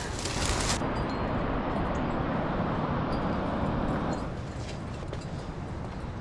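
Steady rushing noise of wind on an outdoor microphone, easing a little about four seconds in.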